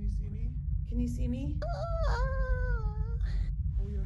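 A woman's voice in short wordless bursts, then one high, drawn-out wail of about a second and a half that rises and slowly falls, over a steady low rumble.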